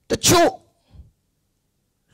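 A man's single short, sharp vocal burst near the start, about half a second long, followed by a faint breath about a second in.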